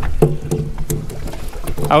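A low, muffled voice speaking in short bits, over a steady wind rumble on the microphone, with a few light knocks.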